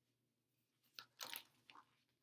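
A paper page of a picture book being turned: a brief papery rustle and crinkle about a second in, with a smaller crinkle just after.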